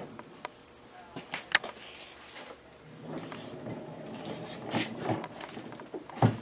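Faint clicks and knocks with a low rolling rumble as a Powermatic lathe's sliding headstock is pushed along the lathe bed and a small cabinet is wheeled aside on its casters.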